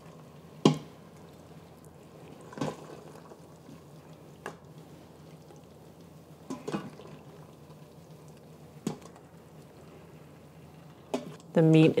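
Plastic spoon scooping saucy braised beef out of a stainless steel pressure-cooker pot into a ceramic bowl: about five scattered knocks and scrapes of the spoon on the pot, a couple of seconds apart, with soft wet sounds of the sauce between.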